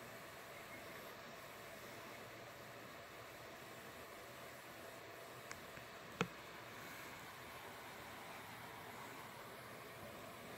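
Quiet room tone with a steady faint hiss. Two short clicks break it a little past halfway, the second sharper and louder.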